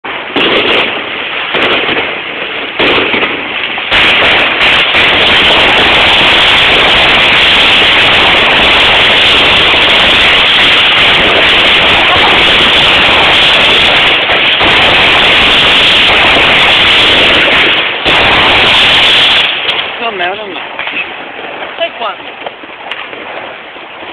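New Year's fireworks and firecrackers going off. Scattered bangs give way about four seconds in to a dense barrage so close together that the bangs merge into one continuous, very loud crackle. About nineteen seconds in it thins out to scattered bangs again.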